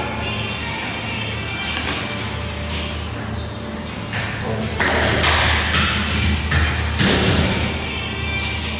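Background music over kitchen noise with a steady low hum and thuds and taps of dough being worked on a steel counter. In the second half, loud rasping bursts come as a metal dough scraper works across the counter.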